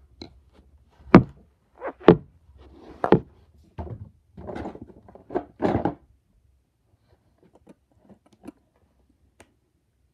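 Handling noise close to the microphone: about four sharp knocks and thumps in the first four seconds, then a few bursts of rustling and scraping, then only a few faint clicks after about six seconds.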